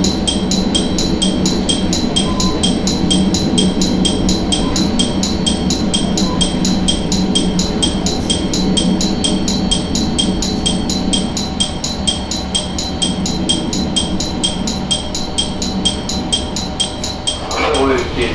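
Diesel railcar's engine running steadily under a bell-like electronic ring that repeats evenly about four times a second.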